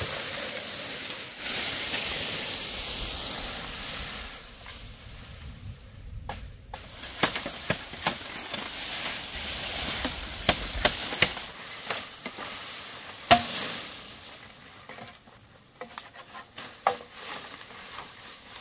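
Green bamboo pole dragged through leafy undergrowth, leaves rustling and swishing for the first few seconds. Then a machete chopping side branches off the pole: a run of sharp chops, the loudest a little past the middle, followed by lighter knocks and rustles near the end.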